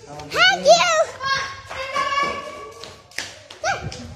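A young girl's voice without words: high-pitched squeals that rise and fall in the first second, then a long held high note, and another short squeal near the end.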